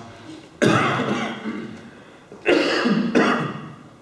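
A man coughing close to a microphone: a long cough about half a second in that trails off, then two shorter coughs near the end.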